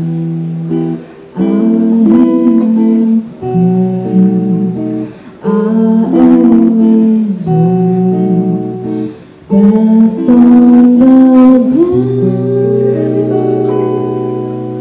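A woman singing a slow song with electric guitar accompaniment, in held phrases with short breaks between them. The recording is very loud, from a wrongly set microphone.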